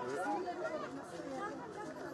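Background chatter of several people talking over one another, none of it standing out as a single clear voice.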